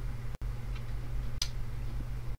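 Room tone: a steady low hum, with a momentary dropout about half a second in and a single faint click about a second and a half in.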